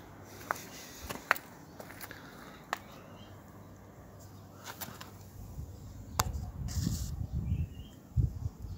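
Scattered sharp clicks and a low rumble near the end: handling noise from a hand-held camera being moved in close to a tractor wheel.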